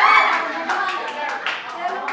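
A group of people clapping quickly and steadily, about five claps a second, with excited voices calling out over it.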